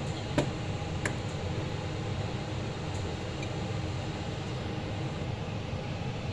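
Steady low hum and hiss with two light clicks near the start.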